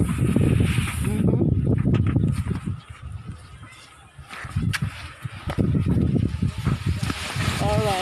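People's voices talking outdoors over a low rumble, quieter for a moment about halfway through, with a wavering voice-like call near the end.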